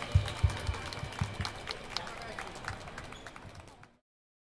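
Scattered applause from a small audience after a song ends: irregular claps that die away near the end.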